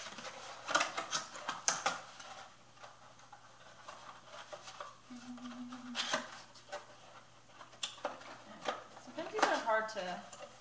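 A USPS Priority Mail small flat rate cardboard box being folded and put together by hand: scattered crisp snaps, creases and rustles of the cardboard flaps, with a cluster about a second in and more near the end.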